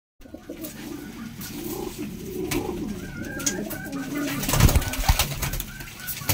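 Several domestic pigeons cooing together, their calls overlapping. Scattered clicks run through, and a couple of louder thumps come about four and a half to five seconds in.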